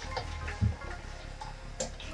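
A few irregular knocks and clicks of a plastic wash basin and towels being handled on a table, the loudest a dull thump about two-thirds of a second in and a sharper click near the end.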